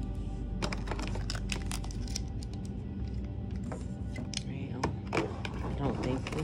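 Background music with a run of light clicks and rustles as a plastic Ouija planchette is lifted out of its cardboard box insert and set down on the board.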